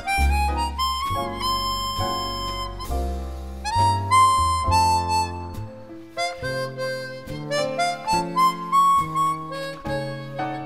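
Jazz harmonica playing the melody over a jazz trio's accompaniment, with bass notes sounding low underneath. The harmonica's phrases climb step by step in pitch.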